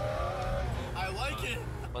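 McLaren F1's V12 engine heard from inside the cabin while driving: a steady low drone with a note rising in pitch through the first half second as it gathers speed, voices talking over it in the second half.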